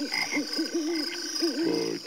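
Frogs croaking in a night swamp: several short rising-and-falling croaks, with a longer, lower croak near the end, over a steady high-pitched insect chirring.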